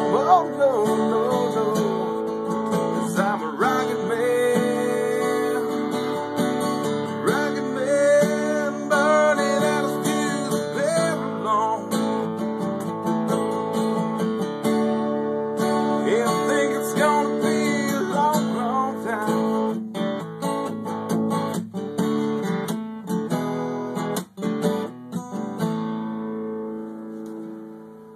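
Strummed acoustic guitar playing an instrumental ending, with a sliding, wavering melody line above the chords for the first two-thirds. The playing fades out over the last few seconds.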